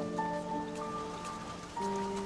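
Soft instrumental music of long held notes, with a new chord coming in near the end, over a faint steady hiss.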